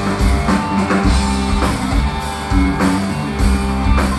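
A live rock band playing through the PA: electric guitar, electric bass and a drum kit keeping a steady beat.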